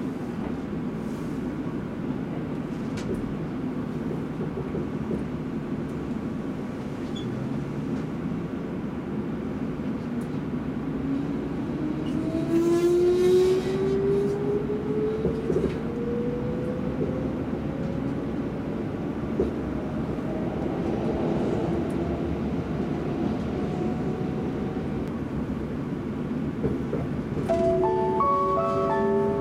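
Kintetsu limited express electric train heard from inside the car as it pulls away from a station: a motor whine that starts low and climbs steadily in pitch as the train gathers speed, over the constant rumble of the running gear.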